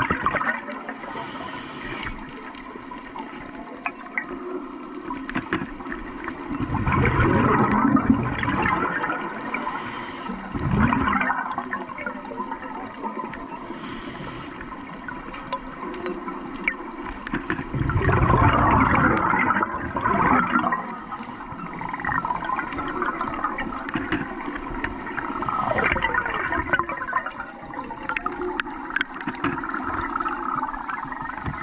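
Scuba regulator breathing underwater: brief hissing inhalations and louder rushing bursts of exhaled bubbles, repeating every several seconds.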